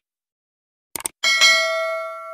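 Subscribe-animation sound effect: a quick mouse click about a second in, followed by a bright notification bell chime that rings and slowly fades.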